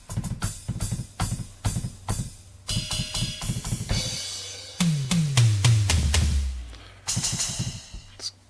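Boss Dr. Rhythm DR-3 drum machine's sounds triggered by finger taps on its pads: a quick run of drum hits, a ringing cymbal, then deep drum hits that fall in pitch, and another cymbal near the end. The pads respond to how hard they are hit.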